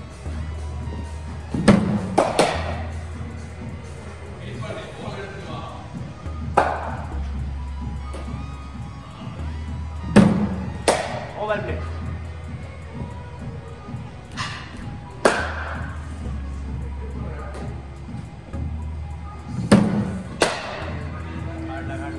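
Cricket balls from a bowling machine being struck by a bat in an indoor net: about five deliveries, four to five seconds apart, each heard as a sharp knock, mostly followed by a second knock under a second later. Background music with a steady bass plays underneath.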